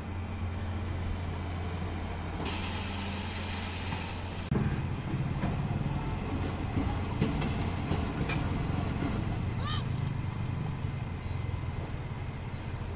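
Diesel engine of a loaded Mitsubishi Canter dump truck running in a river, growing louder and rougher about four and a half seconds in as its dump bed is raised to tip the load.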